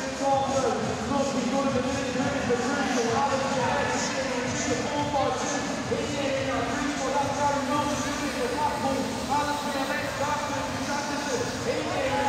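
An announcer's commentary over a public-address system, echoing in a large indoor hall, with a background of arena noise.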